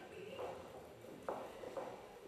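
Indistinct low voices in a large hall, with two sharp knocks about half a second apart in the second half.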